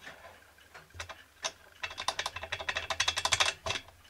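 Märklin toy steam donkey engine running in a fast clatter of small mechanical clicks, about ten a second, starting about two seconds in after a couple of single clicks, and stopping shortly before the end. The piston and cylinder are worn, and most of the steam escapes past the piston.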